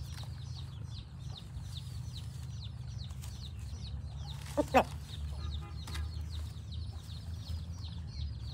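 A rooster gives one short, sharp call about halfway through, followed by faint soft clucking. Underneath runs a steady low hum, with small birds chirping throughout.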